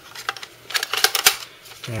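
A quick run of small clicks and taps, mostly bunched about a second in, as a 2.5-inch SSD is set by hand into a perforated metal 2.5-to-3.5-inch drive converter tray.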